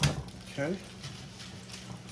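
A single sharp knock in a home kitchen, followed by a faint steady hum.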